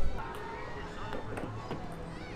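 Faint background music over a low wind rumble on the microphone, with a few light taps about a second in.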